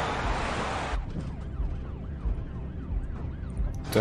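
A police siren on a fast up-and-down wail, its pitch sweeping about three times a second. It starts about a second in, after a rush of hissing noise.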